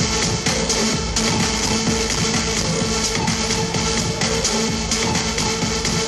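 Electronic dance music from a DJ set with a steady driving beat and a held low note, played loud through a hall's PA system and picked up live from the crowd.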